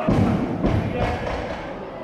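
Heavy thud of a loaded barbell dropped onto a lifting platform, with a second, smaller thud about half a second later as it bounces.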